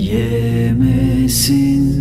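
Male voice slowly singing a Turkish lullaby in a chant-like way over a steady low accompaniment.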